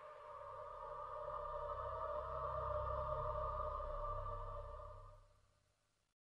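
Horror-trailer sound design: a sustained drone of two steady ringing tones over a low rumble that swells in the middle, then fades out about five seconds in.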